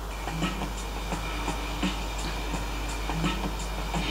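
Faint music with a steady beat, from a reel-to-reel tape played through a homemade single-stage ECC83 tube amplifier into a small speaker. It plays quietly because the stage's cathode resistor is not yet bypassed by a capacitor.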